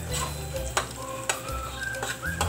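Sliced longganisa sausage and garlic sizzling as they are stir-fried in a wok, with a metal spatula scraping and tapping the pan about three times.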